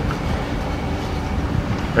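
Steady, even low rumbling background noise with no distinct knocks or tones, like a machine or fan running nearby.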